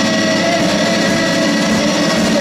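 A live rock band playing loudly, with distorted electric guitars making a dense, steady wall of sound with held tones.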